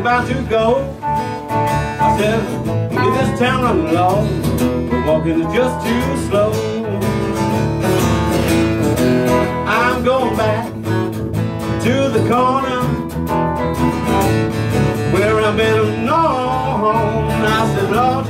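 Live acoustic folk-blues played on guitars: a strummed acoustic guitar with other guitar parts, under a wavering melody line that bends up and down in pitch every few seconds.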